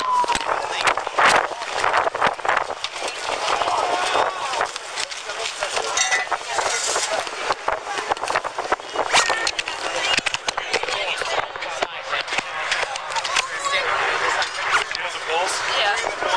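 Body-worn camera rubbing and knocking as the wearer moves quickly on foot: a dense run of footsteps, gear rattle and clothing brushing the microphone, with indistinct voices of people around.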